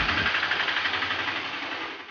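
Auto-rickshaw engine running with the hiss of its tyres through standing rainwater on a flooded street, fading steadily as it drives away.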